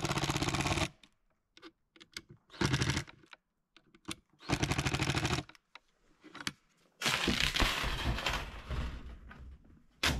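Cordless impact driver driving screws into brass hinges on a pine frame: three short bursts of rapid hammering, the longest at the start and about a second long. In the last three seconds a longer, louder stretch of noise slowly fades.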